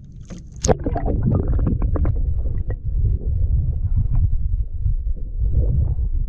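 A waterproof-housed action camera plunges into the sea with a sharp knock and splash about a second in, then picks up a heavy, muffled underwater rumble of moving water with scattered small clicks and knocks.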